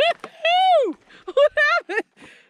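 A woman's high-pitched cries: one long cry rising then falling in pitch, then a few short ones near the end.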